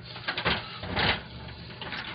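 A few short scratchy rustling noises close to the microphone, the strongest about half a second and one second in, over a faint steady low hum: handling noise of a phone held against a surface.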